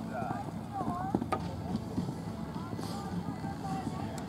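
Faint, distant voices talking over steady outdoor background noise, with one sharp click a little over a second in.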